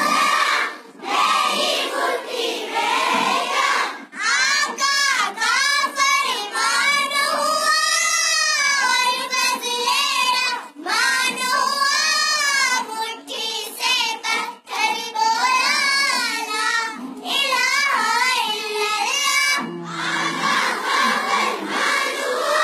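Young girls singing a naat together, a melodic devotional song in phrases separated by brief pauses for breath.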